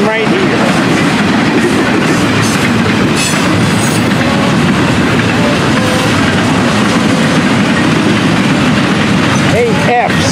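Double-stack intermodal well cars of a freight train rolling past close by: a steady, loud rumble of steel wheels on rail.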